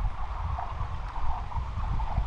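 A stone skidding across frozen lake ice, a steady scraping hiss, over wind rumbling on the microphone.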